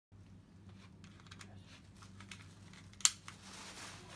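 Small clicks and knocks of firearms and their parts being handled with gloved hands, with one sharp, loud click about three seconds in, over a faint low hum.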